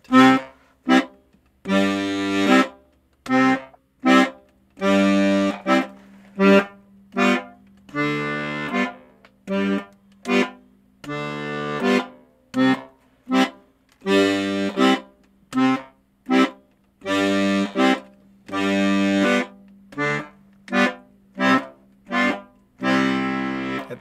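Piano accordion's left-hand buttons playing a boom-chuck pattern: longer, stressed bass notes alternate with short, lighter chord stabs in a steady rhythm. Near the end, bass and chord sound together in one held note.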